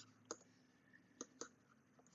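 Three faint clicks of a stylus tip tapping a tablet screen during handwriting, in near silence.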